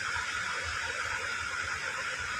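Steady background hiss with nothing else happening: room tone in a pause between speech.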